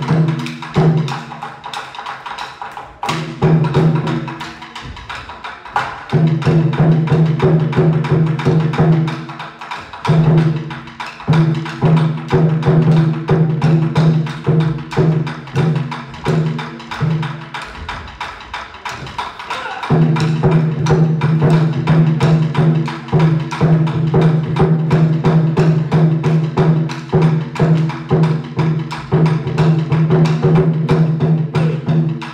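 Japanese taiko ensemble playing: rapid, dense drum strokes with sharp stick clacks, over a steady low tone that drops out for a few seconds shortly after the start and again briefly about two-thirds through.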